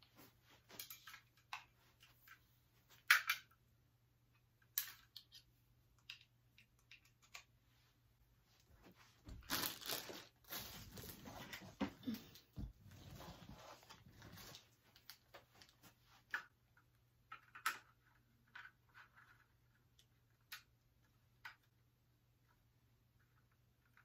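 Faint handling noises: scattered small clicks and knocks, with about five seconds of rustling and crinkling near the middle.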